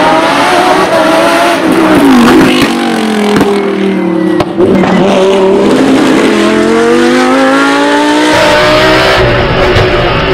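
Lamborghini Huracán Super Trofeo Evo's naturally aspirated V10 race engine, heard from the roadside. Its revs fall and rise several times as the car slows for the bends and accelerates out, with a long climb in pitch in the second half. Near the end it switches to inside the car, the engine running at high revs in second gear.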